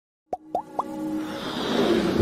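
Intro sound effects for a logo animation: three quick pops, each sliding up in pitch, about a quarter second apart, then a swelling musical riser that builds louder toward the end.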